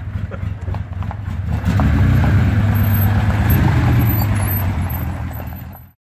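Porsche 914/6's 2.7-litre air-cooled flat-six engine running. It gets louder about a second and a half in, holds there, then fades out at the end.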